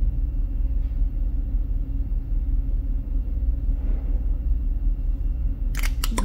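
Steady low rumble of room background noise, with nothing else standing out.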